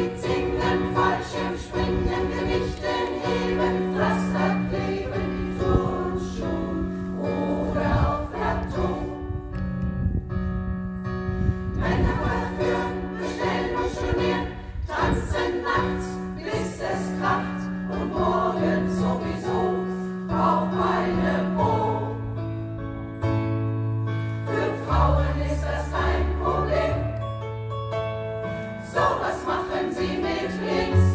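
Women's choir singing with stage-piano accompaniment, held bass notes changing under the voices.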